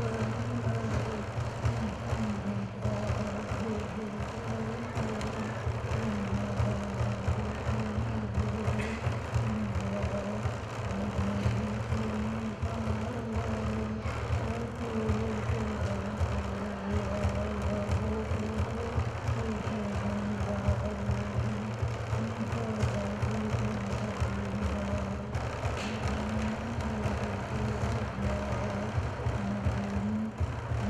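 Innu frame drum (teueikan) beaten with a wooden stick in a rapid, steady beat, while a man sings a low chant over it.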